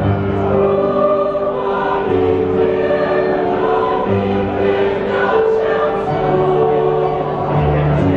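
Mixed choir of men's and women's voices singing in parts, in held chords that change every second or two, over low sustained accompaniment notes.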